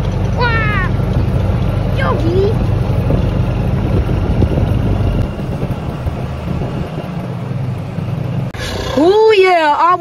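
Golf cart driving along, its drive making a steady low rumble that eases a little about halfway and stops shortly before the end.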